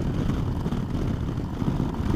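A 2009 Harley-Davidson Dyna Fat Bob's Twin Cam V-twin running steadily at cruising speed through Vance & Hines Short Shots exhaust, heard as a low, even rumble mixed with wind noise.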